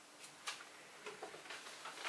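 A quiet room with a few faint, light clicks spaced unevenly, the clearest about half a second in.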